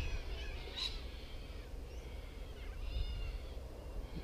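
Birds calling faintly: a few short chirps and, about three seconds in, a call of several stacked tones, over a low rumble.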